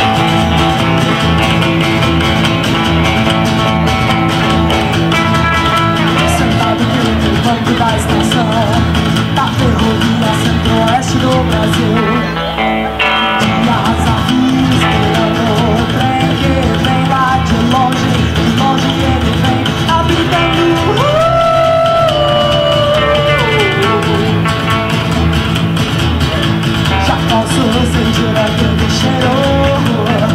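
Live rockabilly trio playing: upright bass with a steady low pulse, strummed acoustic guitar and electric guitar, with a woman singing lead. The band drops out briefly about 12 seconds in.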